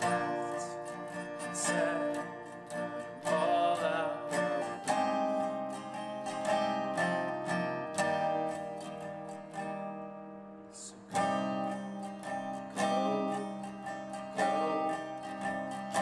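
Resonator guitar strummed in a steady rhythm of chords, with a short sung line in the first few seconds. The playing thins out and quietens around ten seconds in, then a hard strum brings it back up.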